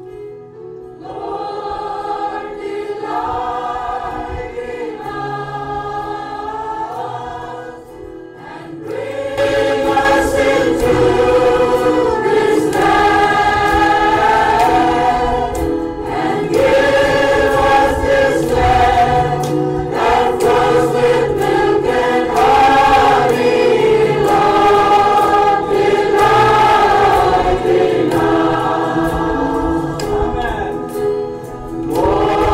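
A church congregation singing a worship chorus together. The singing is softer at first and louder from about nine seconds in.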